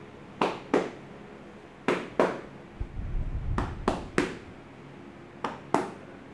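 Hand slaps of a tapping massage on a man's back and shoulders: sharp slaps in quick pairs and threes, about nine in all.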